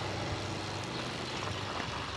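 Honda farm motorbike engine running steadily as it rides along.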